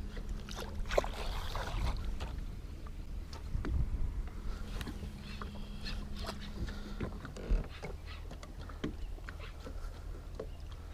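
Water swishing and lapping at the side of a boat as a fishing rod tip is swept through it in a figure eight, with scattered knocks and clicks. A steady low hum runs underneath and stops about seven seconds in.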